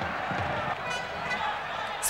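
Indistinct voices, not clearly made out, over a steady background noise from the match broadcast.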